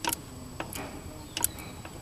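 A few sharp metallic clicks from loose spider gears in a Dana 44 rear differential knocking through their play as the wheel is rocked back and forth, the loudest pair about a second and a half in. The owner suspects a worn bearing around the cross pin.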